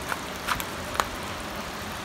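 Steady background hiss with a few faint, short clicks in the first second.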